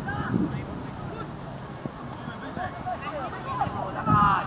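Young players shouting and calling to each other across a football pitch, with short, high cries scattered and overlapping.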